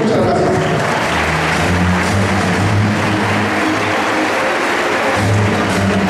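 Audience applauding at the end of a speech, with low, sustained musical notes playing underneath.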